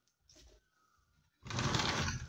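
A sliding window panel rattling along its track, starting suddenly about one and a half seconds in and running loud to the end.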